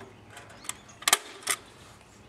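Three sharp clicks in under a second, starting a little past halfway, from hand work on a wooden frame covered in chicken wire.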